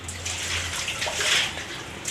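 Water poured out of a large metal pot, splashing onto a concrete floor in uneven gushes.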